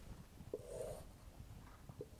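Faint stroke of a dry-erase marker on a whiteboard: a light tap of the tip about half a second in, then a short scratchy drag of about half a second.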